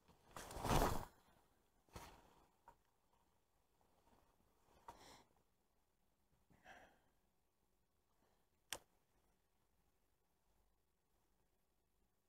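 Quiet handling of a baitcasting rod and reel: a loud breathy whoosh about half a second in, a few softer rustles, then a single sharp click from the reel near nine seconds in.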